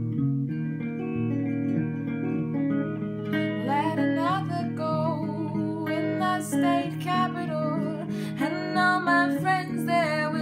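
Two guitars, one of them acoustic, playing a slow folk accompaniment, plucked and strummed. A woman's singing voice comes in about three and a half seconds in, over the guitars.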